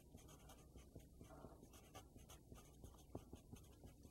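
Faint scratching of a felt-tip marker writing letters in short strokes.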